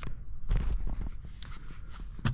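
Handling noise from an RC buggy's battery and wiring being shown: scattered light clicks and scraping, with a low rumble about half a second in.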